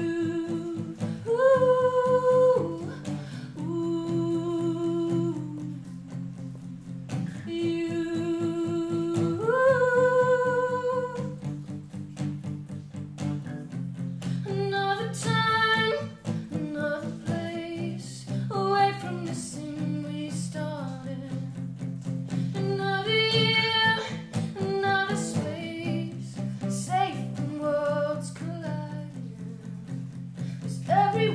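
A woman singing to her own strummed acoustic guitar. Through the first half she holds long notes, sliding up in pitch twice; after that the vocal line moves through shorter notes over the steady strumming.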